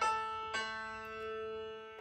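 Piano-like keyboard notes giving the starting pitch for the key of A: two notes struck, one at the start and one about half a second in, each ringing on and fading slowly under a note held from just before.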